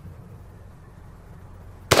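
A single sharp shot from a Ruger SFAR auto-loading rifle in .308 fitted with a muzzle brake. It goes off near the end, after a quiet lull.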